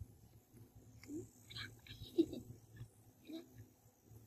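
Baby monkey drinking from a milk bottle, making three short rising grunts about a second apart, with small sucking clicks between them.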